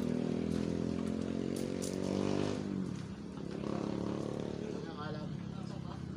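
A motorcycle engine runs steadily. A little before halfway its pitch drops and it grows quieter, as when a passing machine goes by or the revs ease off.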